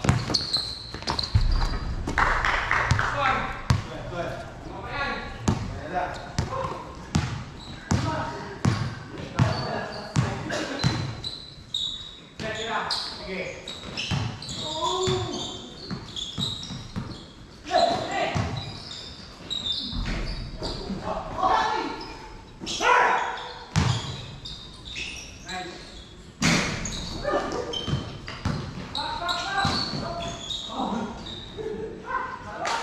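Basketball bouncing repeatedly on a hard court, with players' voices calling out during play.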